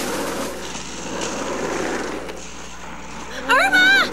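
A steady rushing noise, then near the end a loud cry from a voice that rises in pitch.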